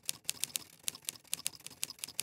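Typing clicks: a fast, slightly uneven run of sharp key clicks, about eight a second.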